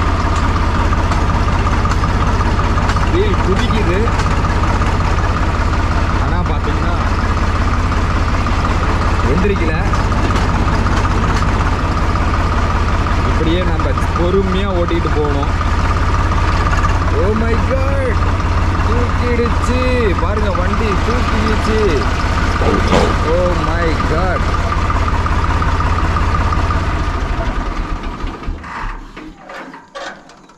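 Farm tractor's diesel engine running steadily as the tractor moves slowly along a dirt track, then dying away and stopping near the end.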